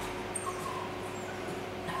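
A small dog whimpering faintly, with short thin whines about half a second in and again near the end.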